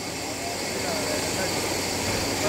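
Steady noisy hiss with faint voices murmuring beneath it.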